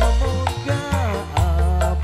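Live dangdut koplo band playing: a gliding, wavering melody line over a steady deep bass and regular hand-drum beats.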